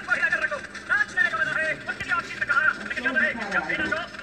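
High-pitched voices chattering in quick, rising and falling bursts without clear words, from an animated film's soundtrack played through a screen's speakers.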